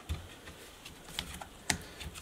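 A few light plastic clicks and taps from fingers handling the hard drive in an opened netbook's drive bay, the sharpest click a little before the end.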